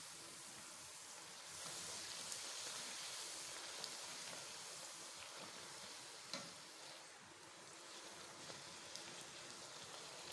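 Bhatura dough deep-frying in hot oil in a steel pot: a faint, steady sizzle, slightly louder for a couple of seconds near the start, with a few light ticks.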